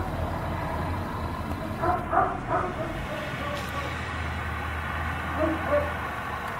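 A dog barking in short single barks: one at the start, three in quick succession about two seconds in, and two more near the end, over a steady low hum.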